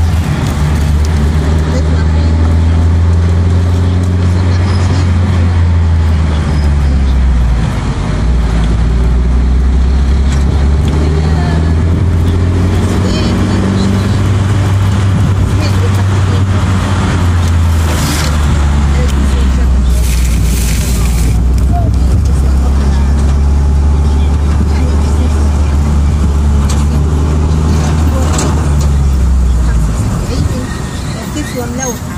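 Car engine and road noise heard from inside the cabin while driving, a loud, steady low hum that shifts in pitch a few times as the speed changes.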